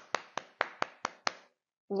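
One person clapping hands, about six quick, even claps that stop a little over a second in.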